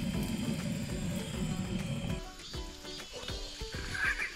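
Butane canister torch blowing its flame into firewood in a wood stove: a steady roar that stops about two seconds in. Background music plays throughout.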